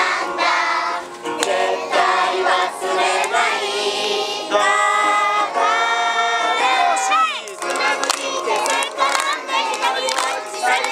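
A song sung by a group of voices over music, children's voices among them, with a sung note sliding downward about seven seconds in.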